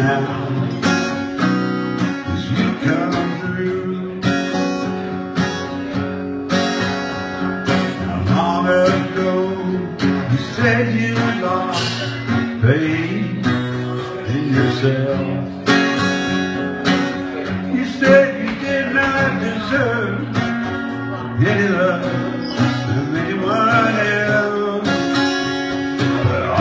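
Acoustic guitar strummed steadily while a man sings: a solo live performance.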